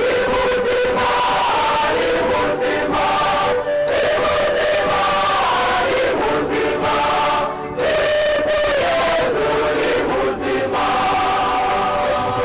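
Church choir singing a Kinyarwanda hymn of thanksgiving, many voices together, with the congregation clapping along.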